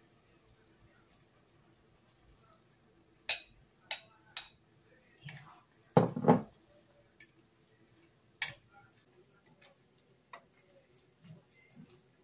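Metal tongs clicking and knocking against a cooking pot while spaghetti is tossed in tomato sauce: a few sharp clicks, with the loudest knock about six seconds in.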